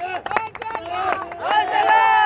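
Men shouting and calling out, with one long drawn-out high call near the end, and a few sharp claps.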